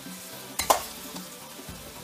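A metal slotted spoon stirring boiled potatoes and butter in a stainless steel pot, with a sharp clink of the spoon against the pot a little over half a second in and a smaller knock later.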